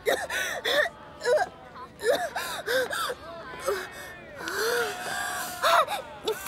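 A young woman retching from car sickness: a run of short gasps, groans and whimpers, with a longer rough, breathy heave near the end.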